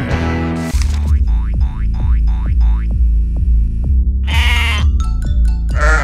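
A cartoon music cue ends and, just under a second in, background music with a heavy bass beat starts. Over it a cartoon sheep bleats twice in the second half.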